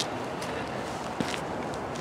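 Footsteps on asphalt, a few faint steps, over a steady hiss of outdoor background noise.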